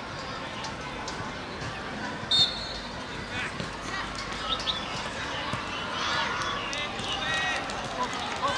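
Voices shouting and calling across an outdoor football pitch over steady crowd and field noise, with a brief high shrill peep about two seconds in.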